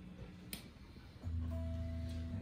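The last chord of an electric jazz guitar tune ringing out and fading through the amplifiers. A single click comes about half a second in, and a low steady tone comes in just past a second.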